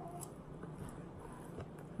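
Quiet chewing of a mouthful of food, with a few faint soft mouth clicks over a low, steady room hum.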